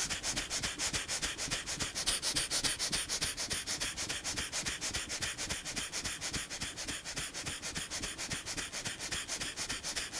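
Bhastrika pranayama (bellows breath): rapid, forceful breaths in and out through the nose with the mouth closed, in a fast, even rhythm of short puffs that keeps going without a break.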